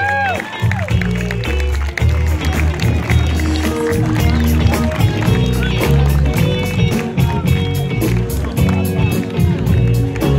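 Live band playing an upbeat pop tune through the stage PA: a steady drum beat under a bass line and held keyboard chords.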